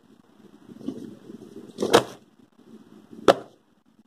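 Parcel packaging being handled: the plastic mailer and cardboard rustle and crinkle, with a loud sharp snap about two seconds in and a shorter click just past three seconds.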